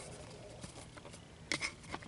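Faint handling of a thin rubber cup holder insert being pressed onto a plastic cup holder, with a few small clicks near the end as it seats.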